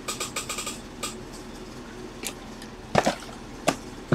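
Cardboard trading-card hobby boxes being handled and shifted on a table: a few light knocks and scuffs, the loudest about three seconds in.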